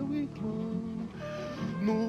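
Acoustic guitar and other instruments playing a short instrumental passage between sung lines of a Brazilian popular song.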